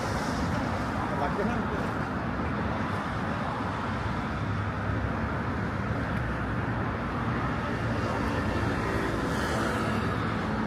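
Steady city road traffic noise from cars running along the street, with a low engine hum joining about halfway through.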